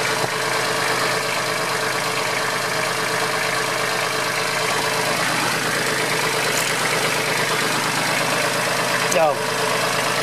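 Engine of a wheeled demolition machine running steadily at a constant speed while it works a concrete slab.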